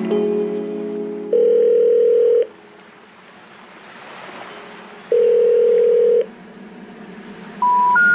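A song's chords break off into a telephone ringback-style tone that sounds twice, about a second each, with a faint hiss between. Near the end, rising stepped beeps begin, like a telephone intercept tone.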